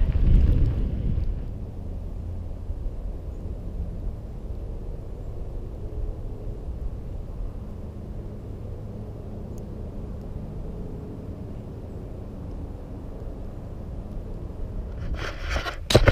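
Wind and tyre rumble from a mountain bike riding a dirt track for the first second or so, then a steady low rumble with a faint hum, and a few sharp clicks near the end.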